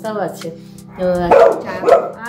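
A dog barking, two loud barks in the second half, over light background music.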